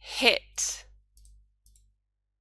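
A woman's brief vocal sound with a breathy burst after it, then a few faint clicks of a computer mouse as the slide advances.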